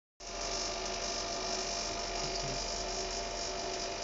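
Steady electrical hum with a few held tones and a high hiss from the running equipment of a laboratory ECR-CVD vacuum system.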